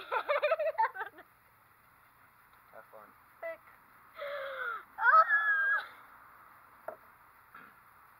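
People laughing: a burst of laughter in the first second, then more high, gliding laughing voices about four to six seconds in. A single light knock follows near seven seconds.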